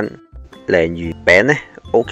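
Speech over background music: a voice remarks that the dace fish cake is good.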